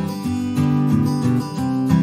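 Intro music of strummed acoustic guitar chords.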